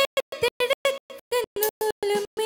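A woman singing a Tamil film song live into a handheld microphone, holding wavering notes. The sound cuts out in rapid, regular dropouts several times a second, so the singing stutters.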